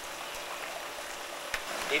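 Steady hiss of running water in seawater turtle tanks, with a faint click about one and a half seconds in.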